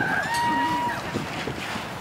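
Faint distant voices with wind noise on the microphone, in open outdoor air.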